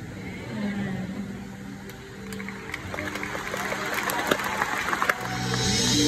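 Soft held keyboard chords, with audience clapping and cheering building from about two seconds in. Near the end the band comes in, louder, at the start of the next song.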